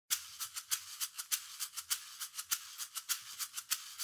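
Background music: a shaker playing a quick, even rhythm on its own.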